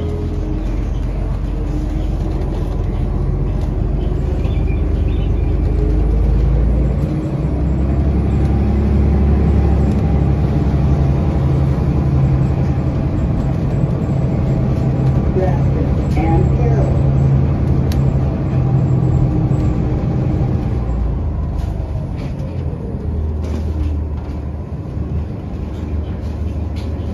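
Inside a city transit bus under way: a steady engine and drivetrain drone with a whine that rises and falls in pitch as the bus speeds up and slows. The drone eases off after about twenty seconds as the bus slows for a stop.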